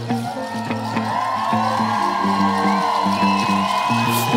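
Live reggae band playing an instrumental passage without vocals: a steady, rhythmic bass line under a long held tone that swells and fades.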